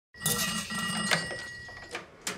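Manual telephone switchboard being worked by hand: sharp clicks of switches and plugs over a steady high ringing tone, with a pulsing buzz during the first second.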